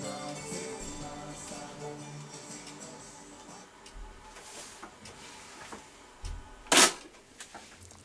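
Music playing back from an AKAI 4000DS MK-I reel-to-reel tape recorder through loudspeakers, fading out over the first few seconds. Near the end comes one loud, sharp click.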